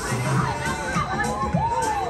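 Riders on a swinging pirate-ship ride screaming and shouting as the boat swings past, several voices overlapping and rising and falling in pitch.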